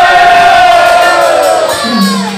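Several voices raising one long, held shout together that dies away near the end.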